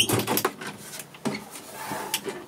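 Latched cupboard door in a camper conversion being unlatched and swung open: a sharp click at the start, then a short scraping rustle and lighter handling noises.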